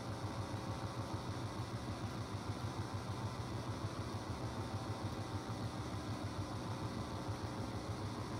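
A steady low mechanical hum with no other events.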